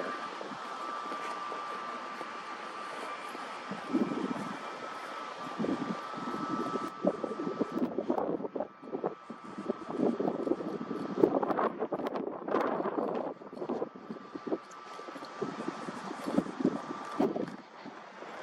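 Wind on the microphone, with irregular rustling and knocks from the camera being carried while walking. Under it runs a faint steady high tone that drops out about seven seconds in and comes back later.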